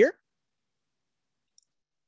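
The end of a spoken word, then near silence broken only by one faint, very short click about a second and a half in.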